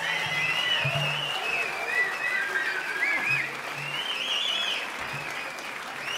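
Concert audience applauding, with high wavering tones sliding up and down above the applause and a few low held notes underneath, as the band gets ready to start.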